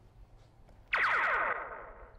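A comic sound effect played from a soundboard: one tone that starts suddenly about a second in and glides steeply down in pitch as it fades out.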